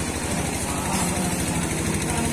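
A small engine idling steadily, with an even, fast throb.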